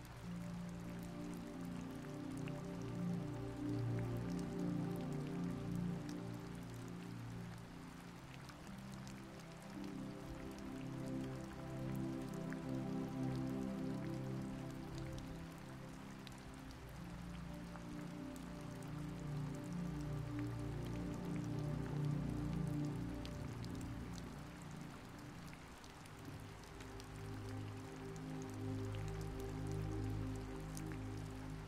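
Soft, slow background music of sustained low chords that change every few seconds, over a steady bed of falling rain with faint drop ticks.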